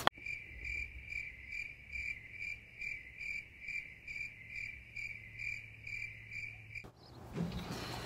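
High, even chirping like a cricket, about two or three chirps a second, starting and stopping abruptly.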